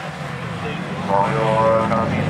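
Folkrace cars' engines running under load as the pack races through a dirt-track bend, growing louder about a second in.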